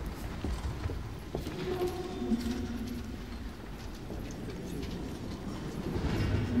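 Library reading-room ambience: a low rumble with scattered soft footsteps on a hard floor, and a faint short tone about two seconds in.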